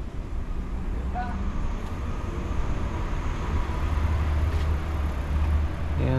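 City street traffic: a motor vehicle's low engine rumble with road noise, growing a little louder in the second half.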